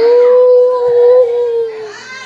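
A child's voice holding one long, steady ghostly "woooo" howl, lifting slightly in pitch near the end and then dying away just before two seconds.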